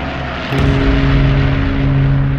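Title-sequence soundtrack: a rushing noise, then about half a second in a low, steady droning tone with overtones sets in and holds.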